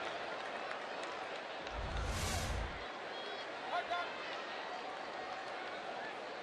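Ballpark crowd murmuring steadily, with a low rumble and a brief hiss lasting about a second, about two seconds in.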